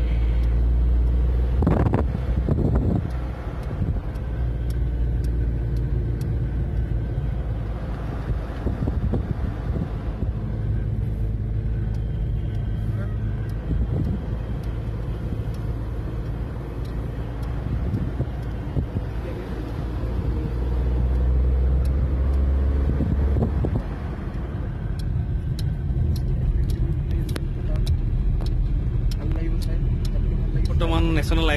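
Car engine and road noise heard from inside a moving car: a steady low drone that rises and falls slightly with the drive.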